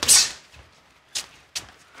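Punches being thrown in a boxing clinch, heard as short, sharp hissing snaps: one at the start and two brief ones a little past a second in.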